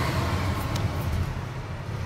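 Steady low rumble of traffic that eases off slightly, with a few faint ticks.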